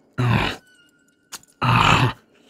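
Two short, low grunts from a man's voice, each about half a second long, about a second and a half apart.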